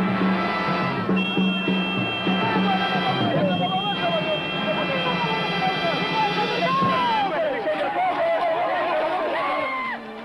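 Dramatic orchestral background music under a group of men shouting and yelling together, with no distinct words.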